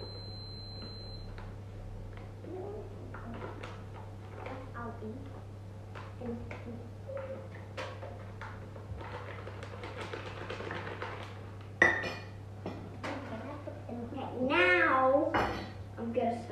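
Baking sounds: bowls and utensils clinking and knocking as ingredients are tipped into mixing bowls, over a steady low hum, with one sharp knock about twelve seconds in. A child's voice rises and falls near the end.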